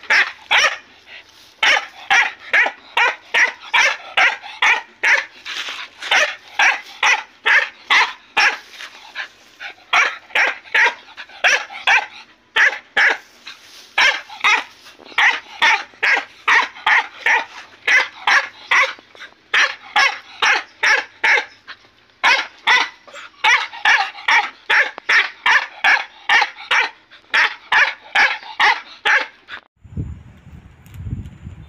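A dog barking over and over in rapid, sharp barks, about three a second, in long runs broken by a few short pauses.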